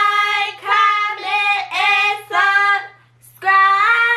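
Girls singing a short tune: several short sung notes with brief breaks, a short pause about three seconds in, then a long held note.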